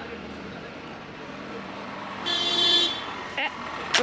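A single vehicle horn toot, a held tone of under a second about two seconds in, over steady outdoor background noise. A sharp crack comes right at the end.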